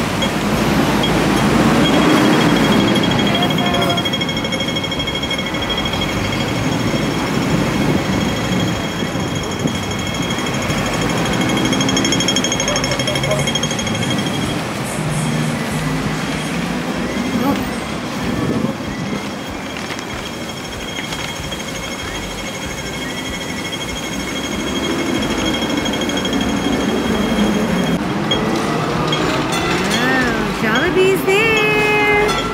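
Busy city street noise: road traffic and voices of people around, with a steady high tone running through roughly the first half.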